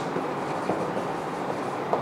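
Marker writing on a whiteboard, heard over a steady background noise.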